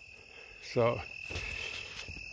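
Steady high-pitched trill of field insects such as crickets, unbroken throughout.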